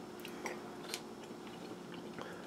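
Faint mouth sounds of someone chewing tender braised venison shank: a few soft wet clicks, over a low steady hum.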